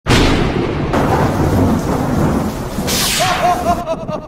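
Thunder sound effect with rain, a loud rumble from the very start and a sharper crack about three seconds in. Music begins under it near the end.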